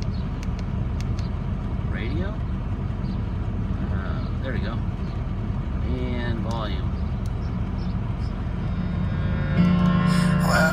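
Steady low rumble of the Ford F-350's 6.0 L turbo-diesel idling, heard inside the cab, with a few faint clicks from the head unit's buttons. Near the end the FM radio comes on with music.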